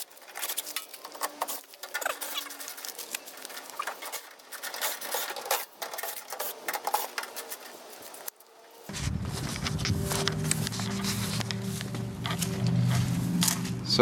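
Fast-forwarded sound of a cordless drill backing the screws out of an AC unit's sheet-metal top panel: a dense, high-pitched run of rapid clicks and chatter. About nine seconds in, it gives way to a steadier, lower sound with held tones.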